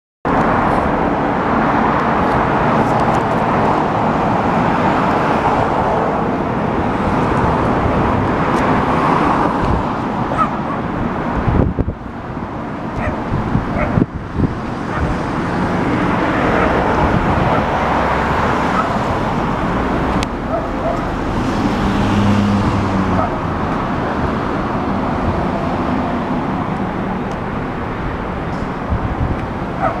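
Yamaha Drag Star 250's air-cooled V-twin engine idling steadily.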